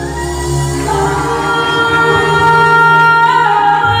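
Female singer singing live into a microphone over a backing band, holding a long note that steps up in pitch about three seconds in; the bass underneath drops away near the start.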